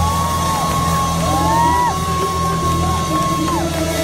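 Live band music played loud in a concert hall, with a high note held for about four seconds that breaks off near the end, over a steady bass line; short rising-and-falling whoops rise over it.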